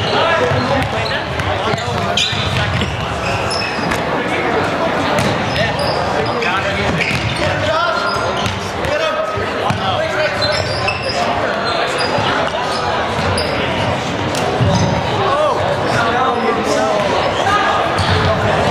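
A handball bouncing repeatedly on a hardwood gym floor during play, with players' voices, echoing in a large hall.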